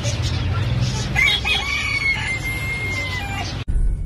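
A rooster crowing once, starting about a second in: one long call held for about two seconds, ending with a slight fall, over background chatter and a low steady hum. The sound cuts off suddenly near the end.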